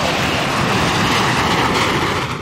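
Loud, steady jet-engine noise from low-flying twin-engine fighter jets passing over.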